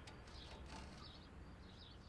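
Faint birds chirping in short repeated calls over a low steady outdoor rumble, with a couple of soft clicks.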